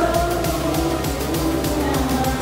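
Congregational hymn singing with instrumental accompaniment and a steady beat, the voices holding long notes.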